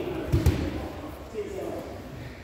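Two dull thumps close together, about half a second in, as bodies hit the grappling mats, over a steady murmur of voices.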